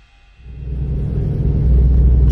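Low, steady rumble of a ferry under way, heard from inside the passenger cabin, coming in about half a second in and quickly growing loud.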